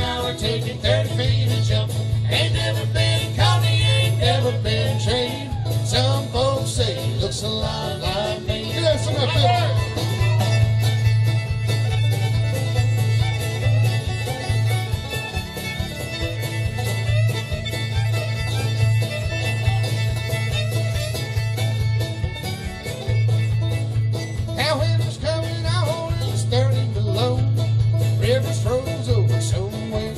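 Live country band playing an instrumental break: a fiddle solo with sliding, bending notes over strummed acoustic guitar and a steady drum beat.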